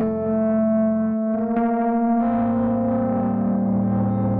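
Sampled electric piano (Sonuscore RO•KI) playing sustained jazz chords through an effects setting, an F major 9 voicing giving way to new chords about a second in and again about two seconds in, settling on A minor 7.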